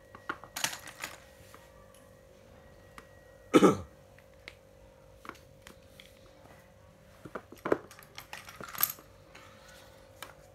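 Scattered clicks and clatters of plastic spinning fishing reels being handled and set down on a tiled floor, with one loud, brief sound falling in pitch about three and a half seconds in. A faint steady hum runs underneath.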